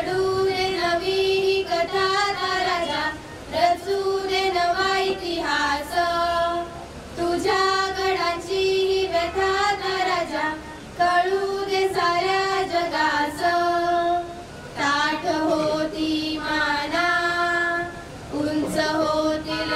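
A group of teenage girls singing a Marathi song together into handheld microphones, in sung phrases with short breaks between them.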